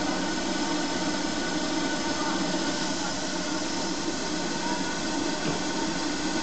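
Steam hissing steadily from a standing LMS Ivatt Class 2MT 2-6-0 steam locomotive, a constant even rush with a few faint whining tones in it.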